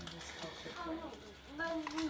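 Electric drill starting up about one and a half seconds in and running with a steady hum, driving the crank shaft of a Hario Mini Mill Slim hand coffee grinder. Faint voices come before it.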